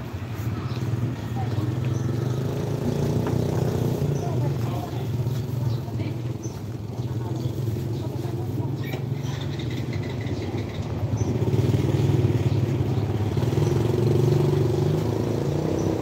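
Street ambience: people talking in the background over a steady engine hum, a little louder about twelve seconds in.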